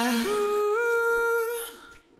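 Isolated male lead vocal, with no backing music, holding a wordless sung note: a low note that jumps up about an octave a quarter of a second in, is held for over a second, then fades out just before the end.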